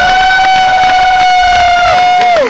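A single long, steady high note in the live concert music: it slides up into the pitch, holds for over two seconds, then drops away.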